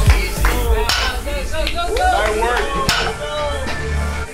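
Background music with a voice singing or rapping over a deep, steady bass.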